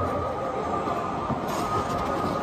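Ice-skate blades scraping and gliding on rink ice, over a steady hiss with a thin, steady high tone.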